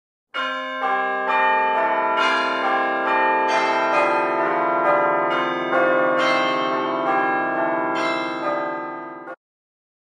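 Bells chiming a slow sequence of struck notes, each ringing on under the next. The chimes fade away and stop about nine seconds in.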